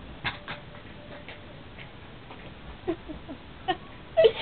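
A couple of faint clicks, then a few short, soft voice sounds falling in pitch about three seconds in.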